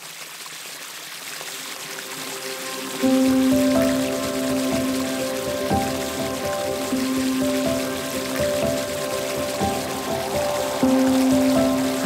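Spray from a pond fountain, water pattering down onto the pond surface, fading in as a steady hiss. About three seconds in, soft music of long held notes comes in over it.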